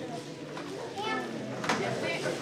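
Indistinct background chatter of children and adults in a hall, with a single sharp click about one and a half seconds in.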